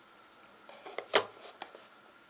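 A mobile phone being handled in the hands over its cardboard box: a few small clicks and taps, with one sharp knock about a second in.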